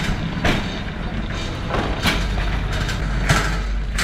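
Wire shopping trolley rolling and rattling as it is pushed along, with a few sharper clatters at irregular moments.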